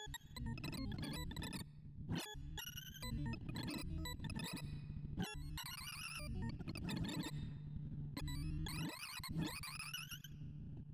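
Sorting-algorithm sonification: a rapid stream of synthesized beeps whose pitch follows the values as WikiSort compares and writes them, with quick rising and falling runs of pitch.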